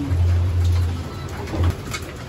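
Racing pigeons cooing as they crowd a feed dish, a low, steady coo that stops shortly before the end, with a few faint clicks of beaks pecking grain.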